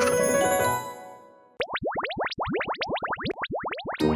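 A children's-song intro jingle ends on a chord that fades out over about a second and a half. Then comes a quick run of rising synthesized pitch sweeps, about eight a second.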